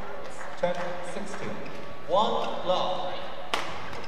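Badminton racket strikes on a shuttlecock during a doubles rally, the loudest a sharp crack about three and a half seconds in, with a short shout from the court a little over two seconds in.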